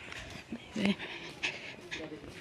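Several brief vocal sounds in short separate bursts.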